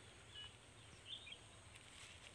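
Near silence: faint outdoor background with two brief, faint bird chirps, about half a second and a second in.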